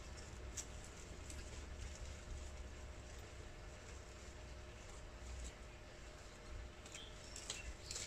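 Faint rustling of dry pea plants with a few light clicks as they are pulled away from their supports, over a low steady rumble.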